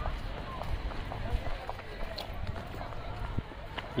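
Outdoor ambience while walking on stone paving: footsteps and a low rumble on the phone microphone, with faint distant voices in the first half.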